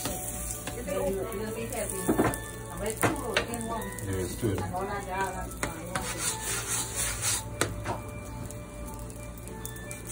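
A flat wooden spatula scraping and pressing a roti against a cast-iron tawa, with scattered sharp knocks of wood on iron.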